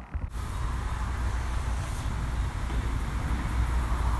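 Forge-shop machinery running steadily, a deep hum under a broad hiss, cutting in abruptly just after the start, with a few faint high ticks near the end.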